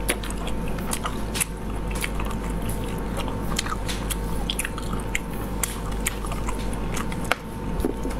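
Close-miked chewing of stewed snail meat, with many sharp wet clicks and smacks scattered throughout, over a steady electrical hum.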